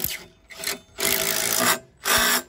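Cordless impact driver driving a masonry screw anchor through a steel angle into clay brick, running in bursts: a brief one about half a second in, then a longer one of under a second, which seats the anchor.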